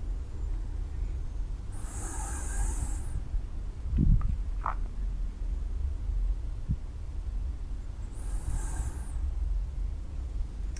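A person's slow, deep breaths into a clip-on microphone, two soft breaths about six seconds apart, over a steady low rumble of room noise.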